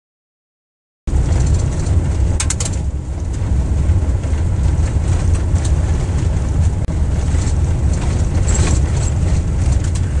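Heavy wind buffeting on the microphone, mixed with road noise, during an open-air ride along a paved road. It starts abruptly about a second in as a loud, steady low rumble, with a few sharp ticks a little later.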